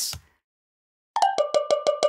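Sampled cowbell from the Steinberg Backbone drum sampler, played solo: a quick run of about seven hits starting about a second in, each ringing with a bright bell tone.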